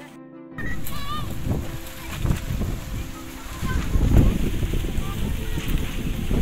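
Wind buffeting the microphone outdoors in loud, gusty low rumbles, with a few short bird chirps above it. A moment of background music cuts off right at the start.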